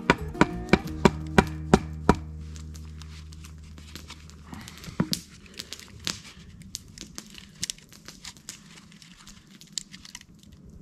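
A short music cue, a low held chord with a run of evenly spaced ticks, fading out over the first few seconds. Then faint, irregular crackles and clicks of a spruce cone being pressed and wedged into the split top of a green spruce stick.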